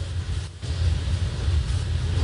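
Steady low hum with faint hiss: courtroom room tone picked up by the microphones, with no speech.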